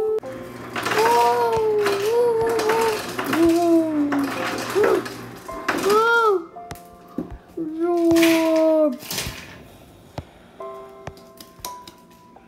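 A child's voice making wordless vocal cries that glide up and down in pitch, in a run of calls over the first half and one more long call about eight seconds in, over background music with held notes.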